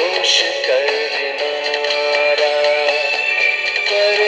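Film song: a voice singing long, held notes that slide between pitches, over instrumental backing music.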